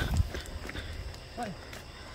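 Footsteps walking on a dirt path, with a heavier low thud right at the start and fainter steps after it.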